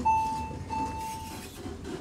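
Short sound effect under a channel logo card: a noisy rush with a steady high whistle-like tone sounding twice, briefly and then longer. It cuts off suddenly at the end.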